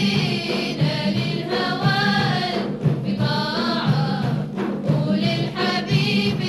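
A women's chorus singing a Kuwaiti folk song together, over a steady drum beat.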